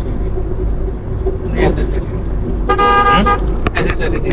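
A vehicle horn sounds one short blast, a little over half a second long, about three seconds in, over a steady low rumble of road traffic.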